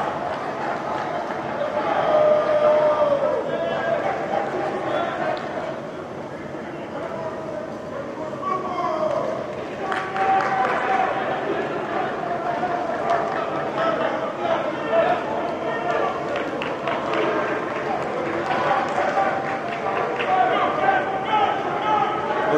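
Several men shouting and calling out over one another during running drills, with no clear words. Players' running footsteps sound underneath.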